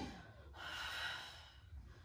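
Background music cuts off, then one faint, airy breath out from a woman exercising with dumbbells.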